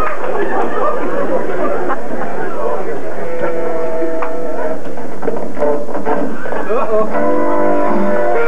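Recorded music played from a small handheld player held up to a microphone, starting about three seconds in over people talking, with held instrumental notes coming in stronger near the end.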